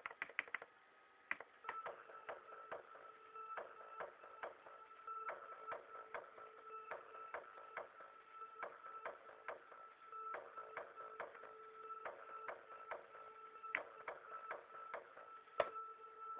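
Quiet electronic beat playing from laptop music software: sharp clicking percussion, about two to three hits a second, over held synth tones.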